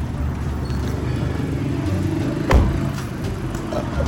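Car idling at the curb with a steady low hum, and a single sharp thump about two and a half seconds in as the car door is shut.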